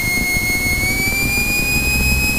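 A light aircraft's stall warning horn sounds a continuous high tone that creeps slightly upward in pitch, with the single piston engine running underneath. It is triggered by the low airspeed on final approach, and the pilots note that it goes off quite early.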